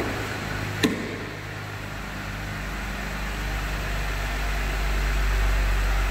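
Jeep Gladiator's 3.6-litre Pentastar V6 idling steadily, getting louder in the second half. A single short click comes about a second in.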